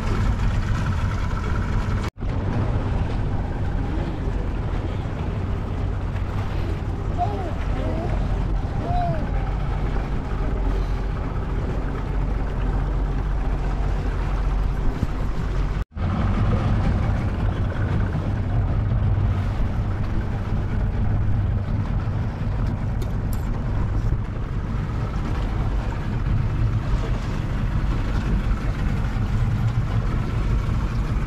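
Mercury 90 outboard motor running at a steady cruising speed, with water rushing past the hull and wind on the microphone. The sound drops out suddenly for an instant twice, about two seconds in and about sixteen seconds in.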